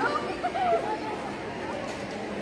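Schoolgirls' voices chattering and calling out while they play, with a few short high calls in the first second.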